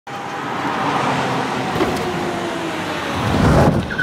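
Cars driving: a steady rushing noise with a deeper rumble swelling near the end.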